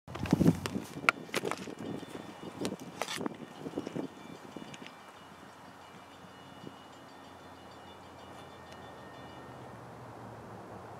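Irregular knocks and rustles close to the microphone for about four seconds, then a faint, steady outdoor background with a few thin high tones.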